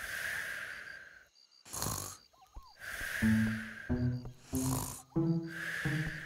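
Cartoon snoring from a dozing giraffe character: slow breaths repeating about every three seconds, each a rasping intake and then a longer hissing breath out. About three seconds in, a tune of short stepping notes starts under the snores.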